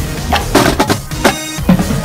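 Marching band drumline playing a cadence: snare drums and bass drums struck in a loud, driving rhythm, several sharp hits a second.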